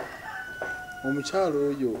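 A rooster crowing in the background: one long drawn-out call that falls slowly in pitch.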